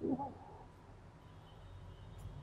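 A single spoken word in a man's voice in the first half second, then quiet room tone with a low steady hum.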